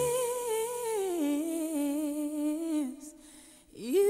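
A solo voice humming a slow, wordless melody with vibrato, unaccompanied. A held note steps down in pitch about a second in and fades just before three seconds; near the end a new note swoops up into the next phrase.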